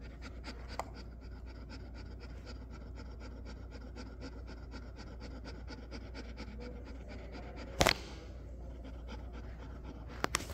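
A dog panting quickly and evenly with its tongue out, about three to four breaths a second. About eight seconds in, one short, sharp click is the loudest sound.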